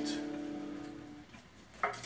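Final strummed chord on acoustic guitar and ukulele ringing out and fading away over about a second. A single short sound near the end.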